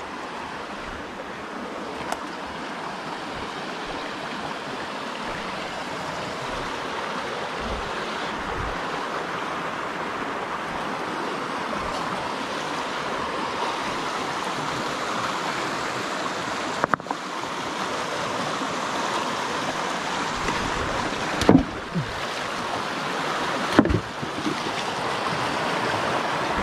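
Creek water rushing over rocks in a steady roar that grows gradually louder as the camera nears a small cascade. A few brief knocks come in the second half.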